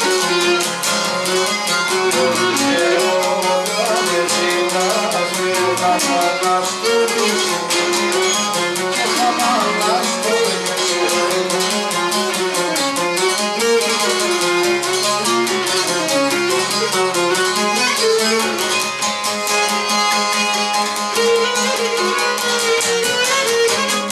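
Cretan lyra playing a syrtos dance melody, with a laouto strumming the steady rhythm beneath it. Instrumental, no singing.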